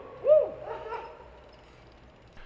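A man's single short cheering shout, rising then falling in pitch, a moment after the start, then fading to quiet.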